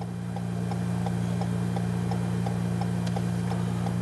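A steady low hum with faint, evenly spaced ticking about three times a second.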